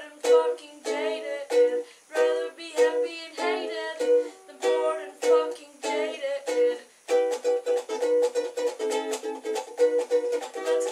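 Ukulele strummed alone in an instrumental break of a punk song, chords struck in short rhythmic groups. About seven seconds in, the strumming turns quicker and steadier.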